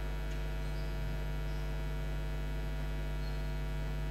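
Steady electrical mains hum: a constant low buzz with many evenly spaced overtones, unchanging throughout.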